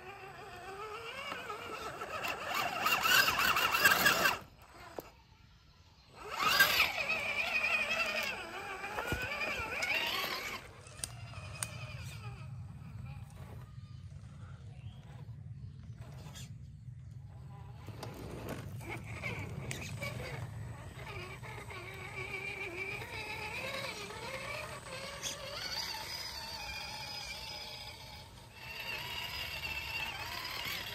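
Scale RC crawler trucks' electric motors and gears whining as they climb dirt trails, the whine rising and falling in pitch with the throttle. It is loudest in the first ten seconds and drops out briefly about five seconds in.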